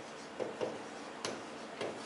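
Chalk tapping and scratching on a blackboard while words are written, giving about four short, irregular ticks.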